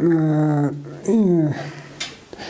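A man's voice speaking, with two long drawn-out syllables about half a second apart.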